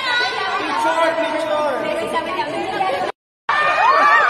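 A group of people talking and exclaiming over one another in excited chatter. The sound cuts out completely for a moment near the end, then the voices come back.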